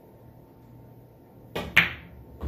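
A pool cue tip striking the cue ball softly with topspin, followed about a fifth of a second later by a louder, sharp click as the cue ball hits the five ball.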